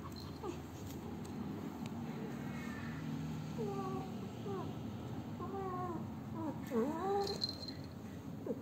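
Female cat in heat calling: several drawn-out, wavering meows in the second half, the loudest near the end.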